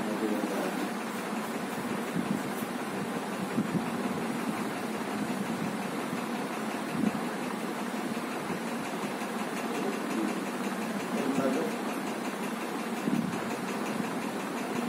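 A steady mechanical running noise, even throughout, with faint low voices now and then.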